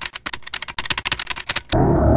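A rapid run of sharp mechanical clicks, about a dozen a second, like keys or a small mechanism being worked. About 1.7 s in they stop and a loud, low, dense noise takes over.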